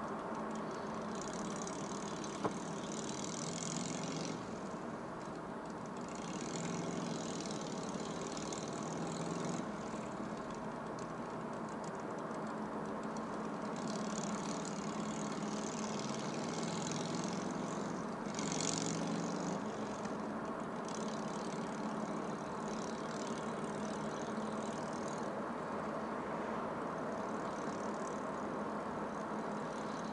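A car driving along a town road: steady engine and tyre noise, with a higher hiss that swells and fades several times.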